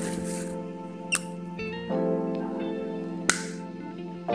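Background music of long held keyboard-like notes that change chord partway through, with two short sharp clicks, one about a second in and one near the end.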